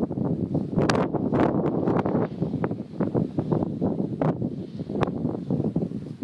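Wind buffeting the microphone: a steady low rumble broken by many short crackling gusts.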